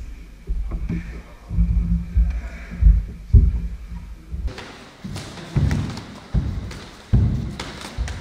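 Irregular dull thuds of hard sparring: gloved punches and kicks landing on the body, mixed with bare feet moving on a wooden floor.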